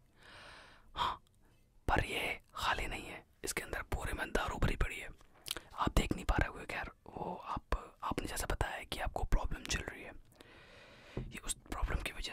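A man whispering close to the microphone, with many soft sharp clicks among the words.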